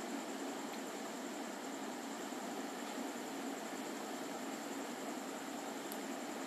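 Steady background hiss of room tone, with a faint thin high whine running through it and no other sound.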